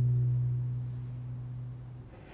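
One low cello note held and slowly fading.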